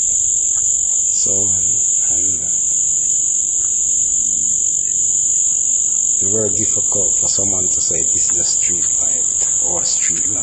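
A steady high-pitched buzz runs throughout, with low murmured speech about a second in and again from about six seconds in.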